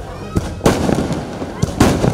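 Fireworks going off in loud crackling bursts, one about half a second in and another near the end.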